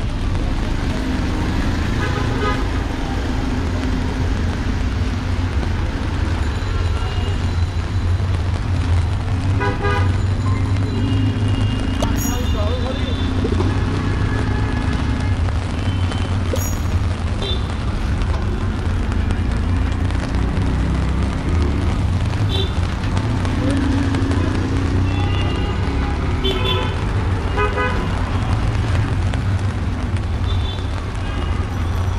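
Busy street traffic running steadily, with repeated short vehicle horn beeps: a couple near the start, one about a third of the way in, and a cluster near the end. Voices of passers-by come through underneath.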